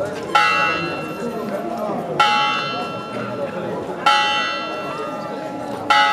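Church tower bell tolling slowly: four strokes about two seconds apart, each ringing and fading before the next, over the murmur of a crowd talking.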